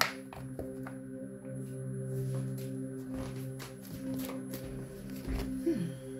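Soft background music of steady sustained tones, with scattered light clicks and taps from a tarot deck being handled and shuffled; the sharpest click comes right at the start.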